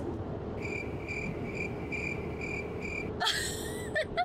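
A car's electronic warning chime beeping at an even pace, about two and a half high beeps a second, six in all, then stopping, over steady road noise in the cabin of a moving car. A woman's laugh near the end.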